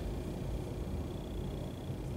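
Room tone: a steady low hum, with a faint high steady whine above it.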